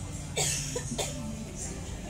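A person coughing twice in quick succession, about half a second and a second in, over background music.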